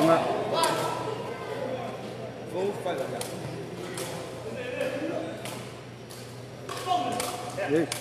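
Woven sepak takraw ball kicked back and forth, a handful of short sharp knocks, over crowd voices and calls.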